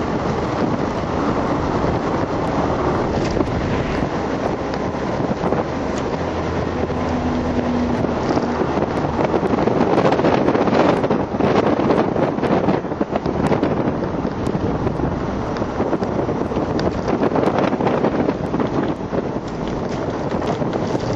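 Audi TT driven at speed on a race circuit, heard from inside the cabin: the engine running under load beneath heavy road and wind noise. The noise swells louder from about ten to thirteen seconds in.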